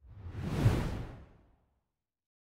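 Whoosh sound effect for a logo-reveal transition: a single swelling rush of noise with a low rumble underneath, peaking about two thirds of a second in and fading out by about a second and a half.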